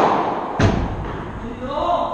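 Padel ball being struck: two sharp hits about half a second apart, the second with a deeper thud. A man's voice calls out near the end.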